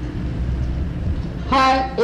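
A man's voice drawing out a long, steady-pitched "haan" near the end, after a pause of about a second and a half filled only by a low rumble in the recording.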